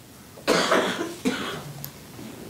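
A man coughing twice, a rough burst about half a second in and a shorter one just after a second.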